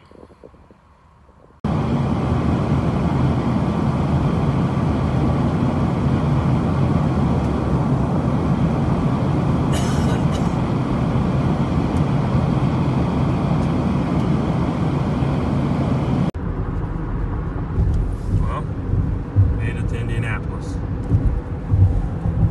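Steady, loud cabin noise of an aircraft in flight, starting abruptly after a second or two and cutting off suddenly about sixteen seconds in. After the cut comes the lower, uneven rumble of a car's tyres and engine on a highway, heard from inside the car.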